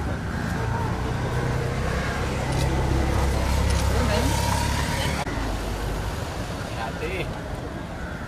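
Road traffic: a motor vehicle's engine running low and steady, loudest in the middle and dropping away suddenly about five seconds in, over general street noise.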